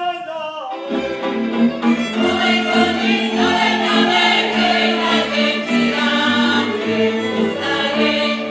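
Slovak folk music from Horehronie played live for dancing: fiddles with a bass line under a group of voices singing. A single melody line carries the first second, then the full band and singers come in together about a second in.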